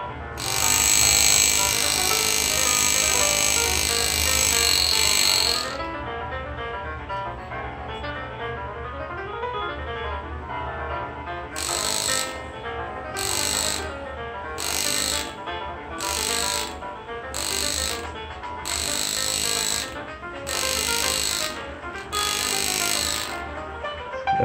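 Metal engraving graver cutting the background of a metal plate in runs of a steady, hissing buzz: one long run of about five seconds near the start, then about ten short cuts in quick succession in the second half. Guitar music plays underneath throughout.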